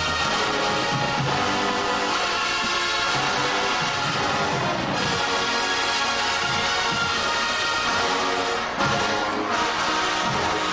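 Marching band playing music steadily.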